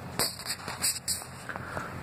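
A few brief, soft hissing rustles in the first second or so, from movement close to the microphone, over faint room noise.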